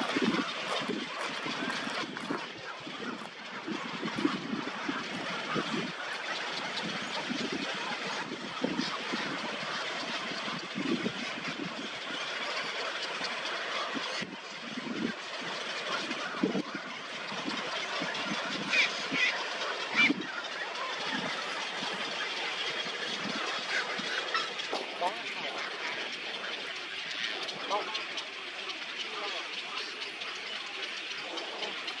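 Dense, continuous din of many birds calling over one another in a stork nesting colony, with a steady noisy background under the calls.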